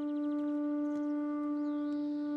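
Background music: a single low drone note held steady, rich in overtones.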